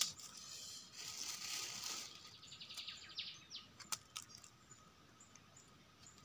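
Faint scraping of a knife blade cleaning soil off the stem of a freshly picked wild mushroom, with a sharp click about four seconds in.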